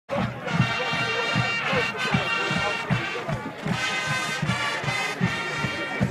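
Band music with sustained chords over a quick steady drumbeat, about three beats a second, with crowd voices mixed in.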